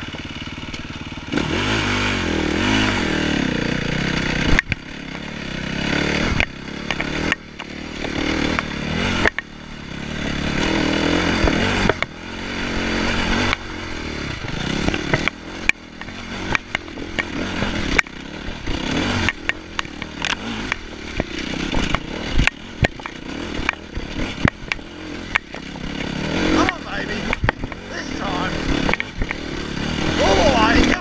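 KTM dirt bike engine revving up and easing off again and again as it climbs and rides a rough trail, the pitch rising with each burst of throttle. Frequent sharp knocks and clatters from the bike over bumps run through it.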